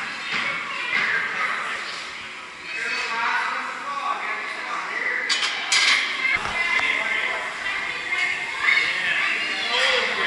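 Indistinct voices echoing in a large gym, with two sharp clinks a little past halfway.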